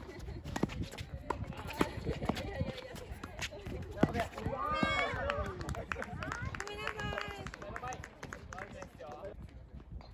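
Tennis ball struck by rackets and players' footsteps on a hard court during a doubles rally, a string of sharp pops. From about halfway, players' raised voices call out as the point ends, the loudest part, with a few more pops near the end.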